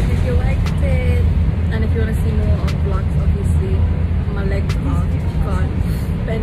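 Steady low rumble of a moving bus heard from inside its cabin: engine and road noise droning evenly, with a few brief clicks and rattles.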